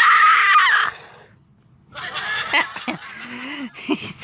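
A person's scream, loud and noisy, lasting about a second, then a short pause and quieter broken vocal sounds.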